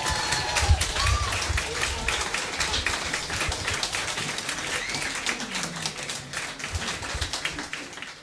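Small audience applauding with a dense patter of hand claps, mixed with voices calling out among the clapping; the applause thins toward the end.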